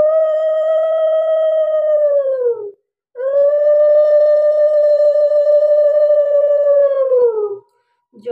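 Conch shell (shankha) blown in two long blasts, each a steady note that sags in pitch as the breath runs out; the first lasts under three seconds, the second, after a brief gap, about four and a half.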